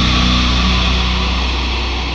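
Distorted electric guitar and bass chord of a death metal track held and ringing out, slowly fading, as the song ends.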